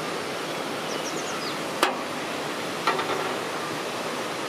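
Steady outdoor rushing noise, with two sharp knocks about a second apart near the middle and a few faint high chirps early on.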